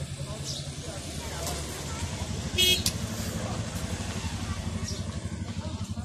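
A vehicle engine running with a steady low rumble, and a short, loud horn toot about two and a half seconds in.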